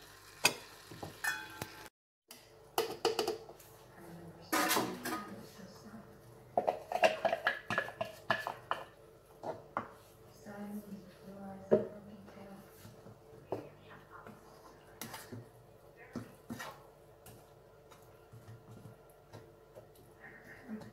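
Wooden spatula stirring and scraping in a frying pan of noodles, minced meat and tomato sauce, with irregular knocks and clatter of utensils and containers against the pan and counter.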